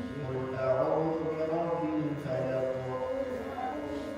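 Quran recitation: a single voice chanting Arabic verses in long, melodic held notes.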